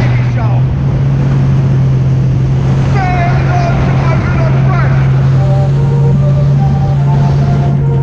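Sea-Doo jet ski's supercharged Rotax 1630 engine running steadily at speed, a constant low drone with the rush of water and wind over it.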